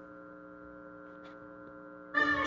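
Steady electrical mains hum: a low-level buzz with a stack of evenly spaced overtones that holds unchanged throughout.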